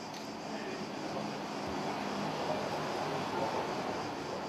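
A low, steady engine-like drone that swells slightly in the middle and eases off near the end.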